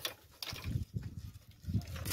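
Dry firewood sticks knocking and scraping together as they are picked up from a pile, a few light clacks over low rumbling.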